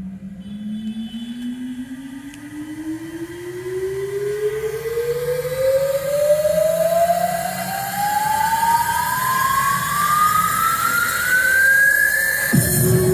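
Portable Bluetooth speakers playing an electronic dance track's build-up riser: a single tone rising steadily in pitch, getting louder as it climbs, with rising noise behind it.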